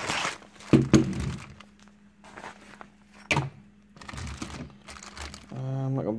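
Clear plastic wrapping crinkling as a tripod sealed in its plastic bag is handled, with a solid thunk about a second in and a single sharp click a little past three seconds.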